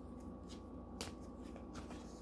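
A deck of tarot cards handled and fanned through in the hands, faint rustling of card on card with a light click about a second in as a card is slid out.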